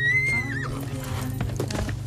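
A horse whinnies once at the start: a high, loud call held about half a second before it drops away. Background music plays throughout, and a few hoofbeats on dirt follow.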